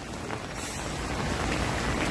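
A steady, even hiss of background noise.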